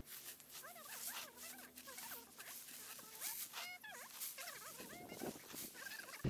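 Faint hiss of a fine water spray from a mist-type garden sprayer watering potted vegetable seedlings, with many faint, short chirping calls of an animal throughout.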